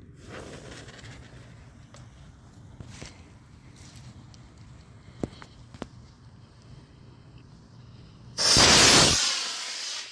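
A lit fuse burns faintly with a few small ticks. About eight seconds in, a D12 black-powder model rocket motor ignites with a sudden, very loud rushing roar, which fades over the next second or so as the plane flies off.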